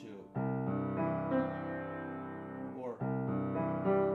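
Grand piano: a low chord struck about a third of a second in and left ringing, then a second chord struck about three seconds in. It sounds out the cello's open strings with the top two raised to form a C major chord.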